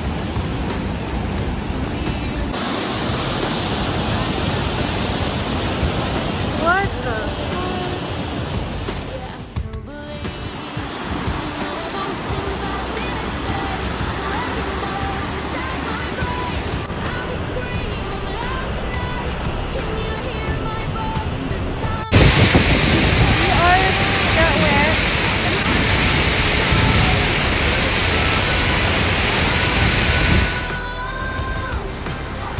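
Steady rush of whitewater and a waterfall across several cut-together clips, getting louder about two-thirds of the way in, with a few voices and faint music underneath.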